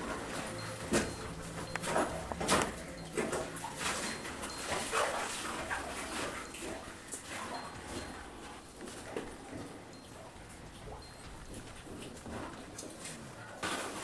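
People clambering over loose rock and fallen timbers: irregular knocks, scrapes and footfalls, growing fewer toward the end.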